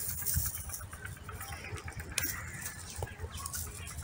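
Faint bird calls over a low, steady outdoor rumble, with a sharp click about two seconds in.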